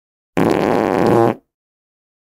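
One loud fart lasting about a second, starting suddenly and tailing off briefly at the end.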